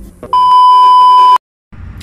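A single loud, steady electronic beep tone, about a second long, cut off sharply and followed by a brief stretch of dead silence. It is a bleep added in editing.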